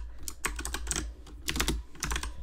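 Typing on a computer keyboard: a quick, irregular run of keystrokes as a word is typed letter by letter.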